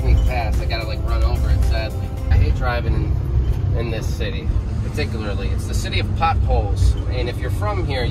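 Ram ProMaster van driving, heard from inside the cab: a steady low engine and road rumble, with a voice and music over it at intervals.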